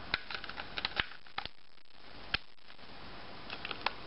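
Small plastic clicks and taps from a handheld PC remote control as AAA batteries are fitted into its open battery compartment: a few sharp clicks scattered through, the sharpest a little over two seconds in, with a small cluster near the end.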